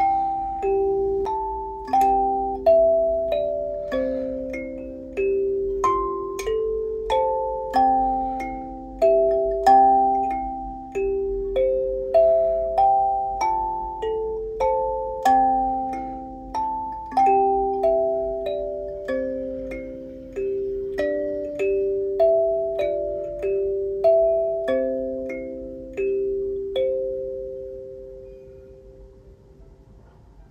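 Hollow-body kalimba played solo: a slow melody of plucked metal tines, each note ringing and decaying, often two notes sounding together. The last note fades out near the end.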